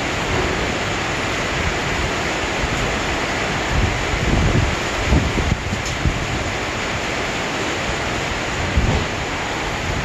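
Steady hiss of rain at a station platform, with a few low rumbles about four to six seconds in and again near the nine-second mark.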